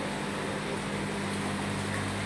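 Steady low machinery hum with an even hiss, the background drone of an aquarium hall's equipment; a deeper hum grows stronger near the end.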